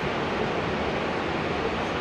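A steady, even rushing background noise with nothing standing out from it.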